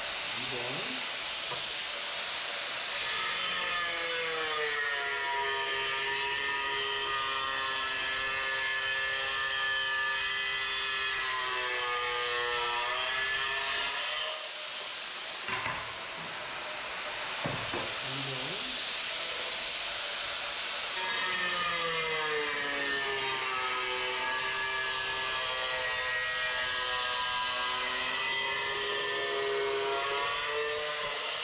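Handheld angle grinder, with a diamond blade, cutting a ceramic floor tile in two long passes with a short break about halfway. In each pass the motor's whine drops in pitch as the blade bites into the tile and climbs again as it comes free.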